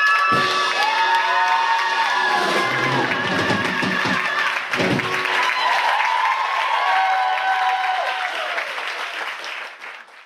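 Audience applauding and cheering with high whoops over the band's final held chord. Two low thuds, one just after the start and one about five seconds in. The applause fades out near the end.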